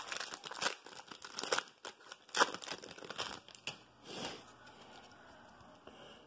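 A trading card pack wrapper being torn open and crinkled by hand, with dense crackling that thins out and stops after about four seconds.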